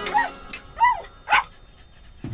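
A dog barking a few times in short barks about half a second apart, while a film score dies away at the start.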